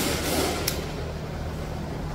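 Pliers gripping and bending a spring-steel ring from a 4x4 free-wheel hub: a short scratchy scrape of metal on metal, ending in a single sharp click about two-thirds of a second in, over a low steady hum.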